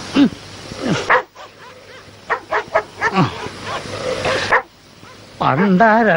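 Dog whimpering and yelping in short calls, two of them sliding steeply down in pitch. A wavering, drawn-out whine starts near the end.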